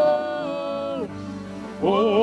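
Gospel worship singing: a sustained sung 'oh' is held for about a second and then trails off over a steady held backing note. Another sung 'oh' starts near the end.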